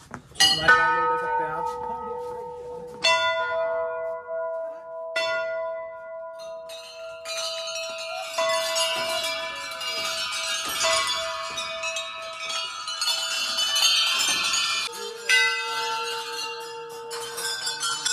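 Rows of hanging brass temple bells struck one after another. Each bell rings on with a long, steady tone. From about eight seconds in, many bells ring together in a dense jangle, and a single clear strike comes near the end.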